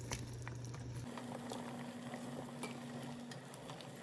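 Pot of pork broth simmering faintly, with small scattered pops and ticks over a low steady hum.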